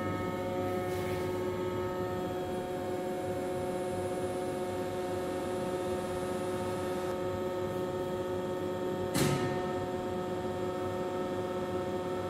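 Reishauer RZ 362A gear grinding machine powered up and idle, giving a steady hum made of several steady tones. A single short knock sounds about nine seconds in.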